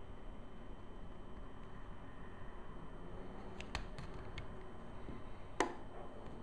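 A few small sharp clicks of a screwdriver against the screws and metal barrel of a camera lens being taken apart, the loudest one near the end, over faint steady room noise.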